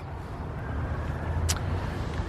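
Steady low outdoor rumble, with a single faint click about one and a half seconds in.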